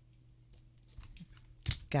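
A few faint clicks and scratches as a pointed tool picks at the cellophane wrap on a tarot deck box, then a sharp crackle near the end as the wrap gives way.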